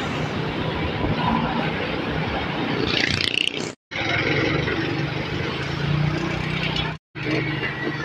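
Motorcycle engine running under a rider on the move, with wind on the microphone and road noise. The sound cuts out to silence briefly twice, about four and seven seconds in.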